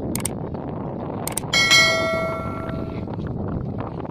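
Subscribe-button sound effect: mouse clicks, then a bell chime about a second and a half in that rings out and fades over about a second and a half. Outdoor background noise runs underneath.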